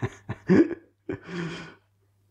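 A man laughing: a few short breathy bursts of laughter, then one longer breathy laugh that stops shortly before the end.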